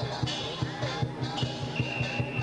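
Chinese dragon dance percussion: a big drum beating a fast, steady rhythm, with cymbals clashing over it in short bursts and a ringing note near the end.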